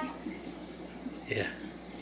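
Faint steady trickle of aquarium water. A single short spoken "yeah" comes just past the middle.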